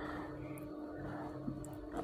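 Pot of water and raw mango pieces boiling on a gas stove: a faint steady bubbling with a low hum under it, and a light click near the end as the steel lid comes off.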